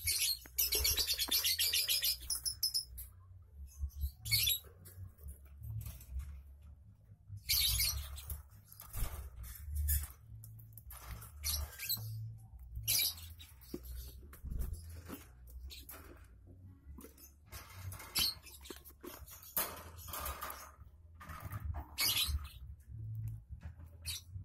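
Lovebirds chirping in high-pitched bursts: a rapid run of chirps in the first few seconds is the loudest part, with shorter bursts later. Under it are low knocks and handling noise as a hand works at the wire cage and the wooden nest box.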